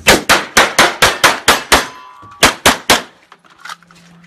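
Pistol fired in rapid succession: about nine shots in under two seconds, a short pause, then three more quick shots, each with a sharp ringing crack.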